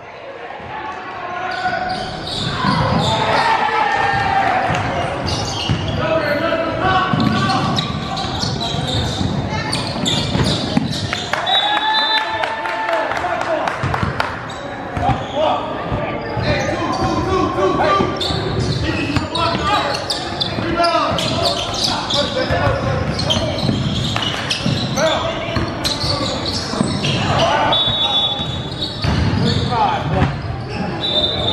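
Basketball game in a gym: the ball bouncing on the hardwood court amid players and spectators calling out, all echoing in a large hall.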